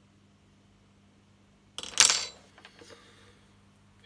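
A sudden, loud clatter about two seconds in, then a few light clicks. Hard phone parts are being handled at the bench as the replacement screen is fitted back into the Samsung 3510's housing.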